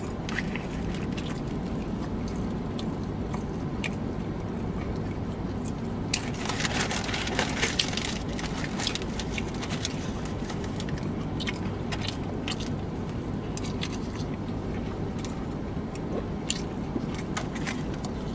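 Close-up chewing and mouth sounds of a man eating barbecue pulled pork: wet smacks and clicks, busiest about six to eight seconds in, over a steady low hum.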